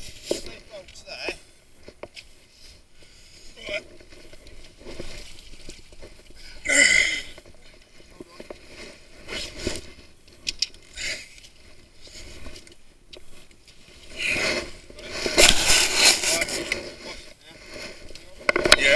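Irregular scraping and rustling from a body-worn camera rubbing against tree bark, with a loud burst about seven seconds in and a longer louder stretch near the end.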